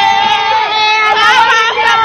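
A group of young women singing loudly together in high voices, with wavering shouts rising over the singing in the second half.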